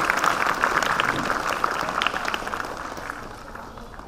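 Audience applause: many hands clapping, loudest at first and dying away over a few seconds.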